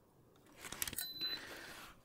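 Electronic DC load tester being plugged in and powering up: a few small clicks as the plug goes in, then one short high-pitched beep about a second in, followed by a faint steady whir from its cooling fan.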